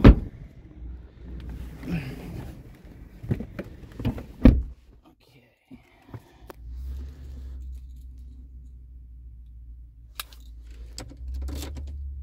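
Clicks and a loud door thunk as someone gets into the cab of a Ford Ranger. About six seconds in, its 2.3-litre EcoBoost four-cylinder engine starts and settles into a steady low idle, heard from inside the cab.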